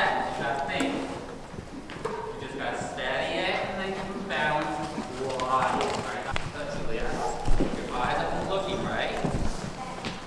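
Indistinct voices talking over a horse walking on the soft dirt footing of an indoor arena, its hooves thudding now and then.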